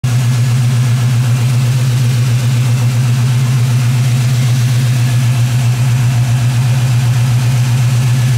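Chevrolet small-block V8 idling steadily, a low, even, pulsing rumble.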